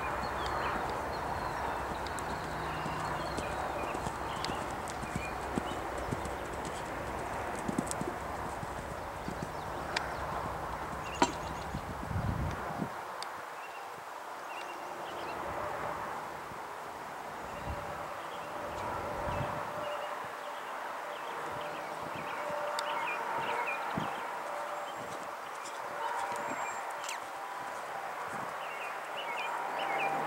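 Hoofbeats of a pony cantering under a rider on sand arena footing.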